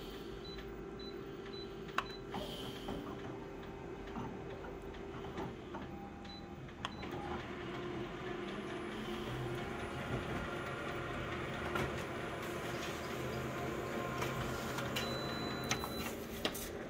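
Office colour photocopier running a copy job: a steady mechanical running sound with a few sharp clicks. It grows fuller and a little louder about halfway through as the sheet goes through.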